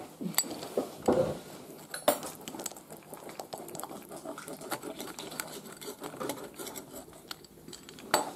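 Pizza wheel rolling through a pepperoni pizza's crust and onto a plastic chopping board: a run of light clicks and scrapes as the blade is pushed back and forth, with a few sharper knocks.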